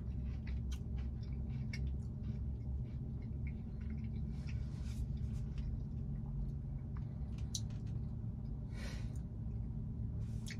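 Close-up chewing of a soft, gooey caramel-soaked cake: small wet mouth clicks and smacks scattered throughout, with two longer soft hisses about four and a half and nine seconds in, over a steady low hum.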